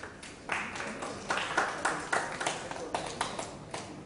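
Scattered hand clapping from a small audience: irregular claps, about four or five a second, stopping near the end.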